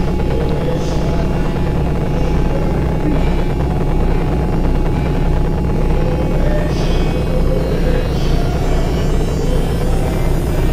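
Dark ambient soundtrack: a loud low drone with a fast pulsing throb in the bass that grows plainer about four seconds in, under faint held tones.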